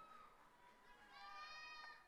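Near silence with faint, high-pitched held calls, one of them about a second in, most likely distant voices in the audience whooping.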